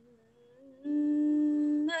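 A woman chanting Qur'an recitation in the melodic tilawah style. A faint low hum comes first, and from about a second in she holds one long, steady note.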